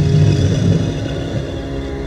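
A movie monster's deep, rumbling growl, strongest in the first second and then easing, over a sustained horror-film score.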